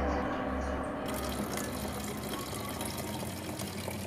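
Liquid poured from a Jobo film-processing tank into a plastic bucket: a steady splashing pour that starts suddenly about a second in, after a low hum.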